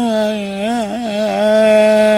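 A man singing a Persian song unaccompanied. He holds one long note with a quick wavering trill in the middle of it.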